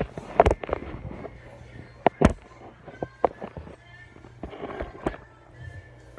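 Sharp knocks and clinks of a fork on a plate of baked fish, several in a few seconds, the two loudest close together about two seconds in.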